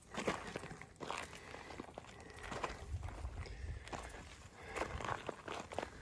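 Footsteps on loose, rocky desert gravel: slow, uneven steps under a second apart.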